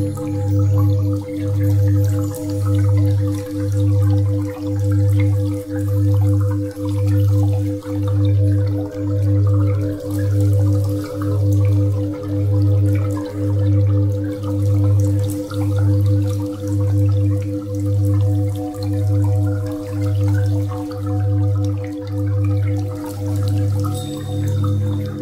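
Sound-healing drone music built on a steady 528 Hz tone with a second steady tone below it. Beneath them a deep hum swells and fades about once a second, with faint dripping water over the top.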